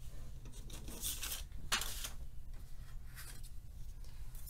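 Pencil scratching on paper as a line is drawn along a clear ruler, in a few short strokes about one and two seconds in, over a low steady room hum.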